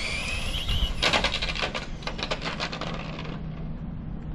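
Electric motor of a Team Associated DR10M RC drag car whining and rising in pitch as it accelerates at full throttle, cutting off about a second in. It is followed by about two and a half seconds of rapid clattering clicks.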